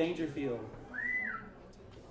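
A single short whistled note about a second in, rising and then falling in pitch, with a few voices talking just before it.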